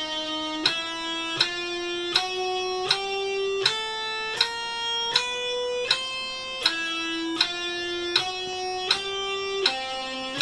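Electric guitar playing a four-fret speed drill (frets 5-6-7-8 on each string), one held single note about every three-quarters of a second, roughly 80 beats a minute, each with a sharp click at its start. The notes climb in small steps, drop back about two-thirds of the way through, climb again, and drop once more near the end.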